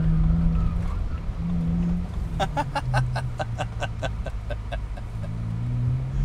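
BMW 1 Series (E8X) engine heard from inside the cabin while being driven hard; its note holds, drops in pitch about halfway through, then climbs again near the end. A man laughs in the middle.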